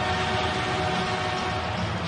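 Hockey arena crowd noise with a held chord of steady tones over it that cuts off near the end.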